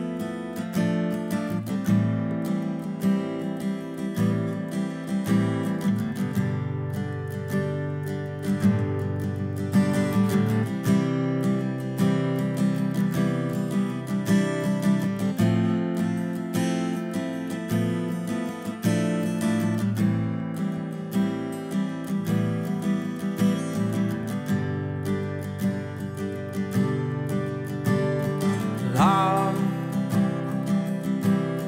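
Background music: a song carried by strummed acoustic guitar with a steady rhythm. A singing voice comes in just before the end.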